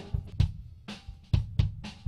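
Close-miked kick drum from a recorded drum kit playing back in a loose groove, with sharper hits between the kick beats. It is an A/B comparison: the raw track, then the EQ'd version, whose EQ cuts the boxy mid-range and the papery beater flap and brings out the beater's natural click.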